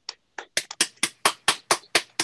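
Hands clapping: quick, even claps, about six a second, starting with a couple of lighter claps.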